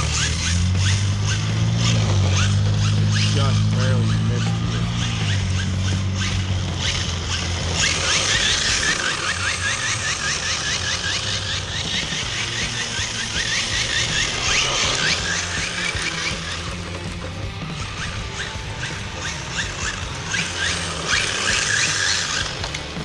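Hard tyres of a radio-controlled drift car squealing and scraping as it slides on asphalt.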